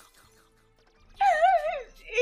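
Faint background music, then about a second in a loud, high-pitched, wavering whine from a flustered anime character's voice.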